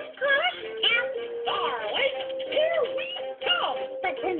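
Children's cartoon soundtrack playing from a television: bouncy music with cartoon character voices singing over a held note. The sound is thin, cut off in the highs.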